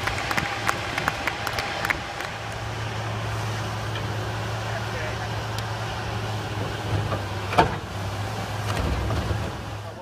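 Hydraulic excavator with a demolition grapple breaking up a concrete structure over its diesel engine's steady hum. Crumbling concrete and debris crackle through the first couple of seconds, and a single loud crack of concrete comes about seven and a half seconds in. The engine swells near the end as the machine works.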